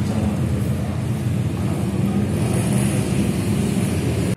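Steady low rumbling background noise, even in level throughout.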